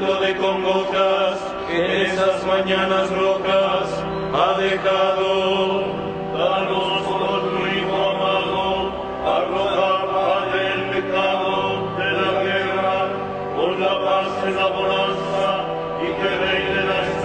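Liturgical chant of the Lauds office, sung slowly with long held notes.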